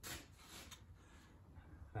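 Faint handling noise as a plywood board is moved and lifted on a workbench: a soft knock at the start, a couple of small clicks, then light rubbing of wood.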